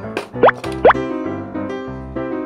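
Children's background music with two quick upward-sweeping bloop sound effects, about half a second apart, in the first second.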